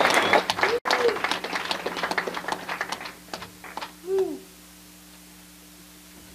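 Small audience applauding, the clapping thinning out and dying away over about four seconds, with a couple of short hooting calls from the room. A faint steady hum is left once the clapping stops.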